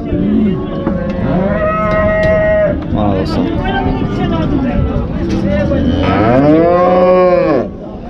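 Cattle mooing: several long, overlapping moos. The loudest is a long call near the end that rises and then falls in pitch.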